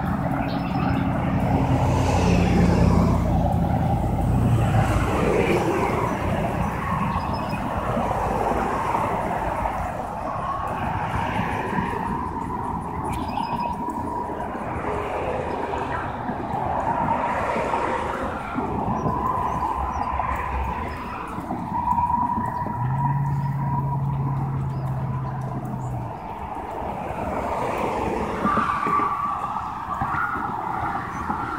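Steady road traffic noise from passing cars, with a low hum in the first few seconds and again for about three seconds late on.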